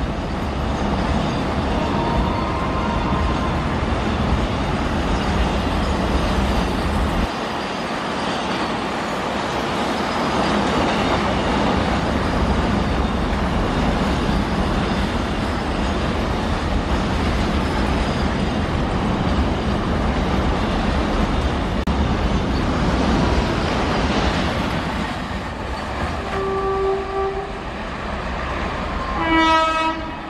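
A long train of enclosed car-carrier wagons rolls past with a steady rumble. Near the end, the approaching WAP-4 electric locomotive sounds two horn blasts about three seconds apart, the second one fuller.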